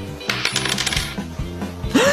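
A quick run of jingling clicks, starting about a third of a second in and lasting well under a second, over steady background music.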